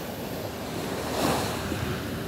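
Small sea waves washing onto a sandy shore, with wind on the microphone. The rush swells and then eases off around the middle.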